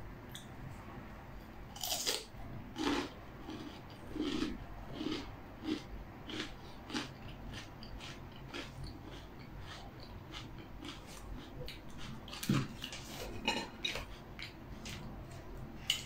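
Crunchy bites and chewing of a fresh jalapeño stuffed with cream cheese and NikNaks corn puffs. There is a quick run of crisp crunches in the first few seconds, then scattered bites.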